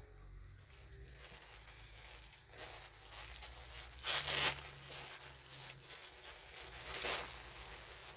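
Wrapping paper rustling and tearing as a small package is unwrapped by hand, with the loudest rip about four seconds in and another near seven seconds.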